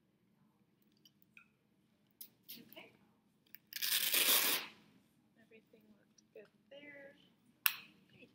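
Velcro of a blood pressure cuff torn open as it comes off the arm: one loud rasp about a second long, halfway through, with softer rustles before it and a sharp click near the end.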